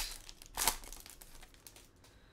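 Foil trading-card pack wrapper crinkling as the hands work a card out of it, a few crackly bursts in the first second, then dying away.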